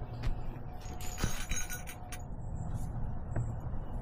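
Small clinks and rattles of gear being handled, bunched together a little over a second in, over a low rumble of handling noise.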